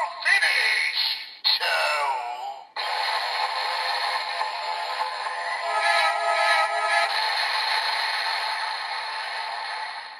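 DX Evol Driver toy belt with the Evol Trigger playing its finisher sound through its small speaker. A recorded voice calls "Black Hole Finish! Ciao!", then a long electronic effect with music runs for about seven seconds and fades out near the end.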